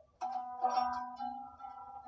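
Acoustic guitar chords strummed, once about a fifth of a second in and again just after half a second, then left ringing.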